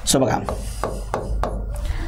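A stylus tapping and rubbing on the glass of an interactive touchscreen board while writing: a run of sharp taps, about three a second, with faint scraping between them.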